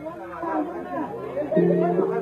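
Intro of a dance remix: voices over music, with a sustained synth chord coming in about one and a half seconds in, just as a voice says "Hello".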